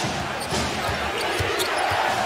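A basketball being dribbled on a hardwood court, a string of low bounces about every half second, over the steady noise of a large arena crowd.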